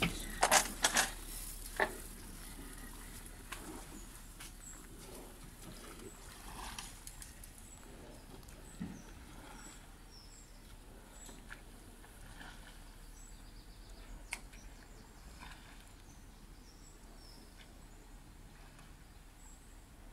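Quiet outdoor ambience with small birds chirping faintly, short high calls scattered throughout. A few sharp clicks and knocks come in the first two seconds.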